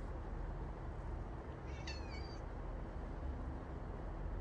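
A domestic cat gives one short, high meow about two seconds in, falling in pitch at the end, over a steady low background hum.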